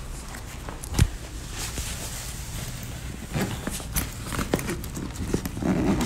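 Handling noise from a phone being carried and moved around: one sharp knock about a second in, then a run of irregular clicks, knocks and rustles.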